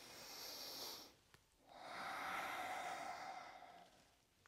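A person breathing audibly: a short breath, then after a brief pause a longer one lasting about two seconds.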